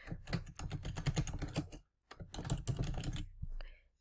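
Computer keyboard typing: rapid keystrokes in two runs with a short pause about halfway, as a two-word title is typed in.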